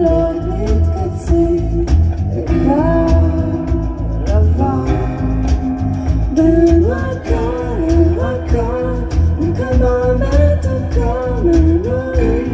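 A live trio of piano, electric bass and drum kit playing a song, with a voice singing a sliding melody over a steady drum beat.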